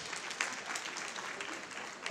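Audience applauding: a dense, even patter of many hands clapping, easing off slightly toward the end.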